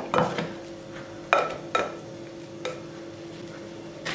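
A plastic dough scraper scraping and knocking against a glass mixing bowl as soft risen yeast dough is turned out onto a silicone mat: a few sharp clicks and knocks over a faint steady hum.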